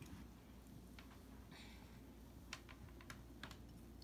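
Near silence broken by a handful of faint, light clicks spread through it; the clearest come a little past halfway.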